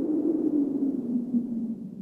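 Low hum, falling slightly in pitch and fading away: the tail of a car-drift sound effect in an animated logo sting.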